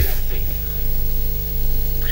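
Steady electrical hum with hiss and a faint held tone, unchanging throughout: line noise on the audio feed of a remote video-link guest.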